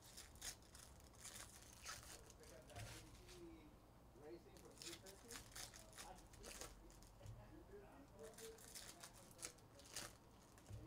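Foil trading-card pack wrappers crinkling and tearing in short crackly bursts as packs are opened and handled.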